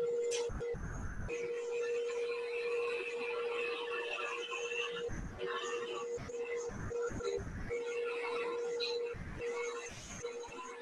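Wood lathe running with a steady hum while a turning tool cuts the spinning wooden top, a scraping hiss from the cut coming and going.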